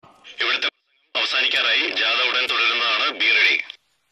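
A voice talking over a handheld police walkie-talkie. It sounds thin and narrow, as through the radio's small speaker, with a brief burst at the start, then steady talk from about a second in until near the end.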